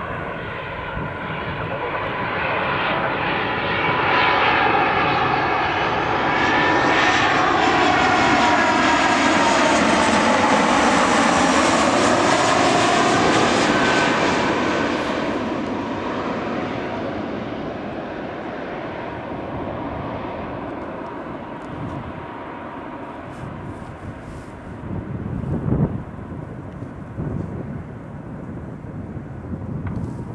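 Airbus A320-211's CFM56 turbofan engines as the jet passes low overhead on final approach: the sound swells to its loudest for about ten seconds, with a whine that falls in pitch as it goes by, then fades as the aircraft heads down to the runway. Near the end there is a brief low rumble.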